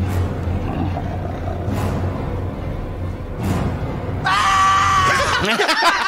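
Film soundtrack with dark, low background music, then about four seconds in a man's loud, high-pitched scream held for about a second. Laughter follows near the end.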